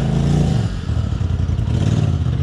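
Polaris RZR side-by-side's engine working the throttle on a rocky climb: the revs are held up briefly, then drop off about half a second in to a lower, uneven running.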